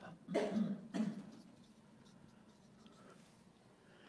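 Two short coughs in the first second or so, followed by faint room tone.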